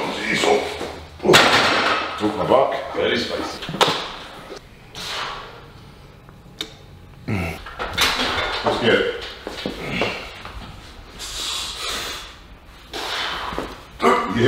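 A weightlifter's grunts and forceful breaths while push-pressing a loaded barbell overhead. A few sharp clanks come from the bar and bumper plates.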